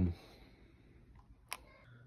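The tail of a spoken word, then quiet room tone broken by a single short, sharp click about one and a half seconds in.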